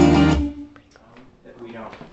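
Playback of a recorded song with strummed guitar and a full mix, cutting off abruptly about half a second in. Then come a quiet room and faint voices.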